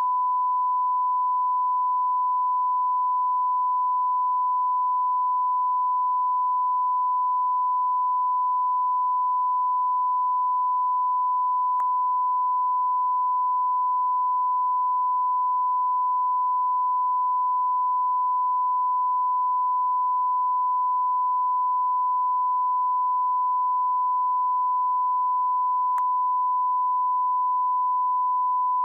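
Steady 1 kHz line-up test tone of an idle broadcast feed standing on its identification slate, one unchanging pitch at a constant level. Two faint clicks come through, about halfway through and again near the end.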